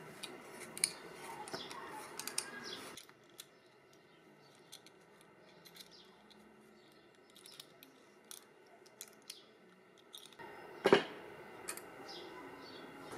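Small metallic clicks and taps from handling steel-nail pins, knife scales and C-clamps while the handle is clamped up. Near the end comes a single sharp knock as the clamped knife is set down on the wooden workbench.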